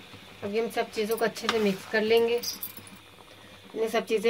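A woman's voice speaking, in short phrases with pauses between them.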